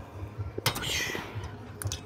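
Quiet sounds of a lying leg curl machine rep in progress: a sharp click about two-thirds of a second in, then a short breathy rush of air, with a few lighter clicks near the end.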